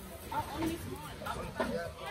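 Indistinct talking: voices close by that the recogniser wrote down no words for, over a low background murmur.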